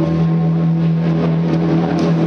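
A sustained low synthesizer drone through a concert PA, one steady note held without a break.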